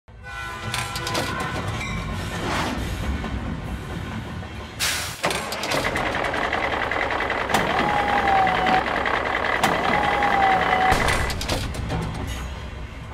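Battery-powered toy train set running: a small motor's steady whine with the clatter and clicks of plastic track pieces and cargo balls. Two short sliding tones come over it in the second half.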